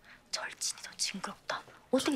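Whispered speech: short hushed syllables without full voice.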